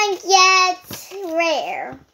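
A young girl singing short wordless notes, each held on one pitch; the last, longer note slides down in pitch near the end.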